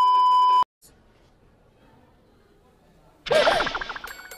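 Colour-bars test-pattern beep used as a video transition: one steady, single-pitched electronic tone that cuts off suddenly well under a second in, followed by a couple of seconds of near silence.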